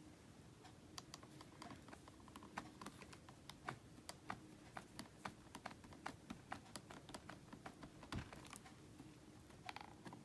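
Faint, irregular light clicks and taps, a few a second, as fingertips press and tap a clear photopolymer stamp down onto card to transfer the ink. One duller thump comes a little past eight seconds in.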